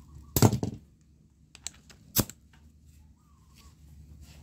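Workshop handling noise: a short clatter of knocks about half a second in, a couple of faint ticks, then one sharp click a little after two seconds.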